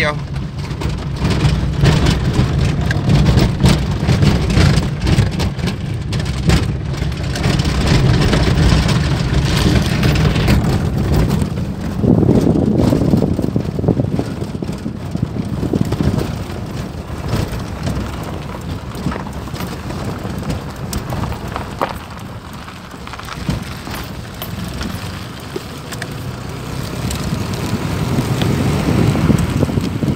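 Small car driving along a dirt road: its engine and the rumble of tyres on loose dirt, with scattered clicks of grit and gravel. Wind noise hits the microphone held outside the car. The sound eases for a stretch before the end and then picks up again.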